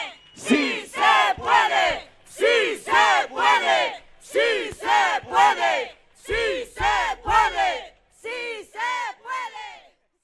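Crowd chanting a three-syllable slogan in unison, repeated five times about every two seconds, with an occasional low thump under the chant.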